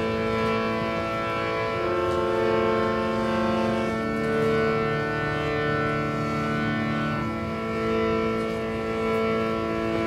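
Prepared harmonium playing a sustained drone chord of reedy held notes, with some notes changing about 2, 4 and 7 seconds in. The loudness swells gently and evenly.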